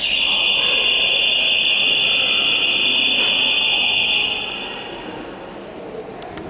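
A loud, steady, high-pitched electronic buzzer or alarm tone that starts suddenly, holds for about four seconds, then fades out over the next second.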